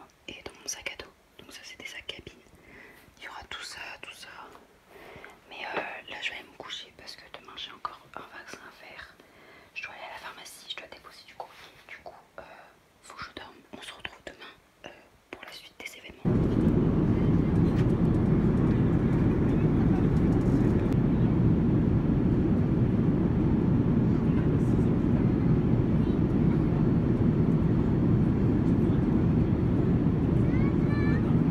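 Soft whispering for about the first half. About sixteen seconds in, it cuts abruptly to the loud, steady low rumble and hiss of a jet airliner cabin in flight.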